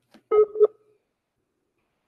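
Two short electronic beeps at the same pitch, about a quarter second apart, like a call or voice-chat notification tone.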